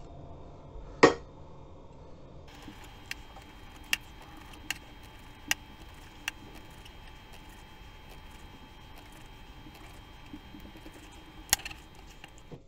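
Knife slicing a cured salmon fillet thinly on a plastic cutting board: a quiet scraping with sharp clicks of the blade against the board, about one a second for a few seconds, and a louder knock about a second in and again near the end.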